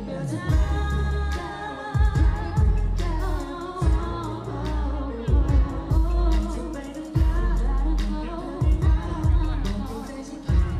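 Pop song performed live: vocalists singing over a backing track with a heavy bass and drum beat, played through the stage PA.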